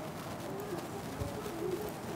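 A bird cooing faintly in low, wavering calls over steady room hiss.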